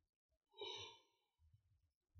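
A man's single breathy sigh, exhaled into his hands held over his mouth, starting about half a second in and fading within a second.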